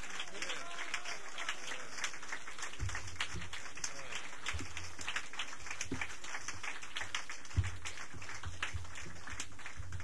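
Audience applauding, a dense run of hand claps throughout.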